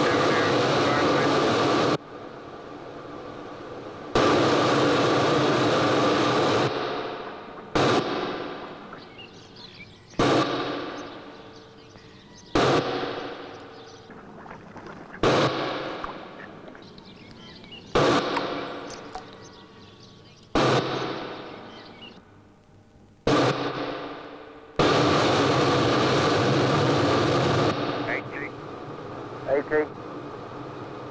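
Rolls-Royce Spey turbofan running on test in a hush house, loud and steady in three long stretches. Between them comes a string of sudden surges, about every two and a half seconds, each fading away over a couple of seconds.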